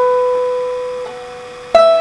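Acoustic guitar played between sung lines: a struck note rings and slowly fades, a soft note joins about a second in, and a new loud strike comes near the end.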